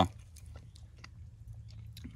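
Faint chewing of a bite of raw deer heart, with small soft mouth clicks over a steady low hum.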